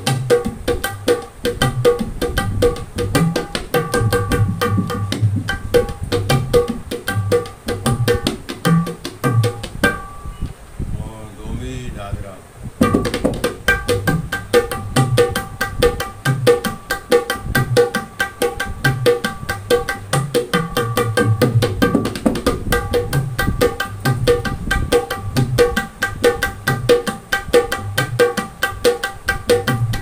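A double-headed dholak barrel drum played by hand in a fast, steady teka rhythm, deep bass strokes interleaved with ringing treble strokes. The playing stops for about three seconds around ten seconds in, then picks up again.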